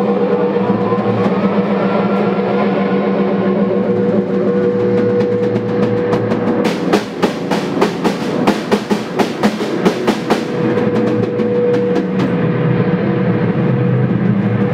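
Live experimental noise music: a loud, sustained electronic drone holding steady low tones, with a slow rising glide early on. About halfway through, a rapid flurry of sharp percussive hits runs for about four seconds before the drone goes on alone.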